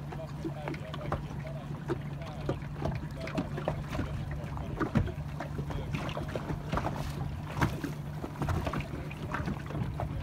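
The engine of a small motorboat running steadily at low speed, with irregular knocks of water slapping against the hull; the sharpest knocks come about five seconds in and again near eight seconds.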